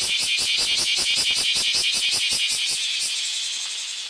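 Cicada singing close by: a loud, high-pitched buzz pulsing about eight times a second, which fades over the last second and stops near the end.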